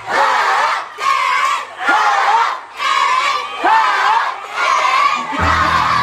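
A crowd of schoolchildren shouting together in unison, in rhythmic bursts about once a second. Music with a heavy bass comes back in near the end.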